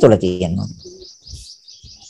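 Birds chirping in the background, a quick unbroken run of high chirps, while a man's voice trails off in the first half second.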